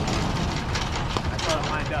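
A steady low rumble with a few faint, sharp clicks of plastic pickleballs and paddles, and two short shouts from the players.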